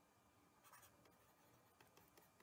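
Near silence, with faint scratches and taps of a stylus writing on a tablet. The strokes come in a brief cluster just under a second in, with a few light ticks near the end.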